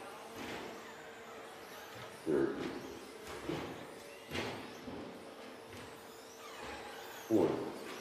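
Electric 1/10-scale 2WD short course RC trucks with 13.5-turn brushless motors running laps on an indoor dirt track, a faint motor whine rising and falling as they accelerate and brake, with a few short spoken position calls over it.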